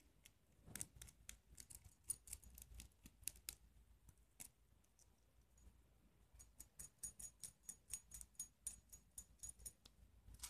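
Faint metallic clicking of small brass cabinet hinges and screws being handled and fastened by hand into a track link: scattered clicks in the first few seconds, then a quick run of light clicks, about five a second, in the second half.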